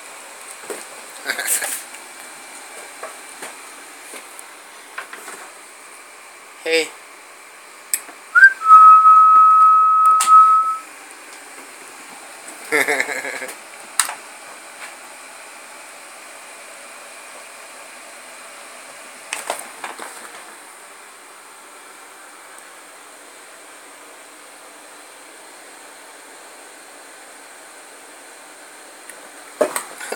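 Faint room hiss with a thin steady high whine, scattered light knocks and rustles, and about a third of the way in one loud whistled note that flicks up and then holds a steady pitch for about two seconds.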